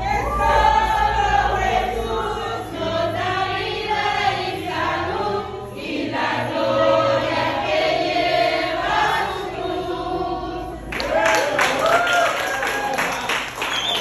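A group of women and children singing a welcome song together, then breaking into clapping about eleven seconds in.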